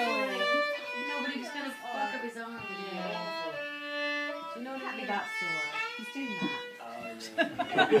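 A fiddle playing a tune with a guitar alongside, the notes sliding and changing several times a second.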